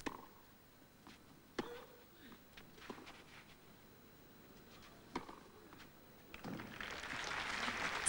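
Tennis ball struck back and forth in a rally: a few sharp pops about one to two seconds apart. Near the end, crowd applause rises as the point is won.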